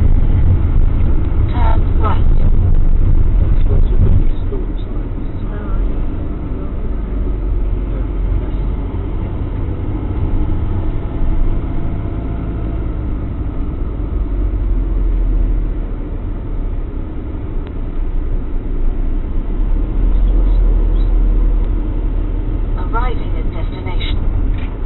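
Motorhome cab noise while driving slowly: steady low engine and road rumble, dropping slightly in level about four seconds in. A few brief words are spoken near the start and near the end.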